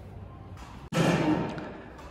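Indoor room ambience with a faint steady hum, broken by an abrupt cut about a second in; a louder muffled background sound then comes in and fades away.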